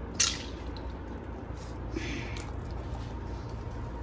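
Tomato pieces dropping into a large pot of broth: a short splash about a quarter-second in and a softer one about two seconds in, over a low steady hum.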